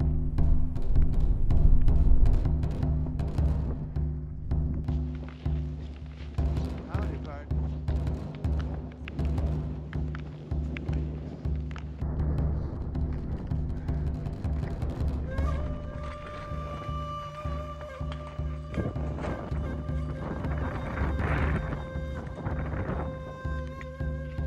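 Background music with steady, low held notes and a regular beat. Higher held tones come in about two-thirds of the way through.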